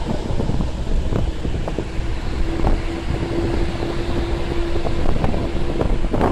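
Road rumble and wind noise from a moving vehicle, with wind buffeting the microphone. A steady hum rises over the rumble for a couple of seconds in the middle.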